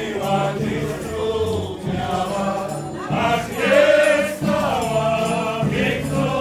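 Polish folk band playing a dance tune: fiddles carry a wavering melody over sustained double-bass notes and a drum.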